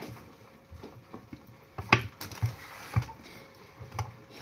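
Kitchen utensils being handled on a countertop: a handful of sharp knocks and clicks, most of them two to three seconds in.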